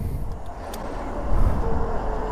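Road traffic noise: a steady rumble and hiss of passing vehicles, swelling a little past halfway.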